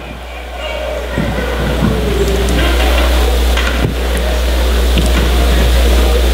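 Indoor crowd murmur and chatter in a school gymnasium during a free throw, over a steady low hum, growing louder over the first couple of seconds.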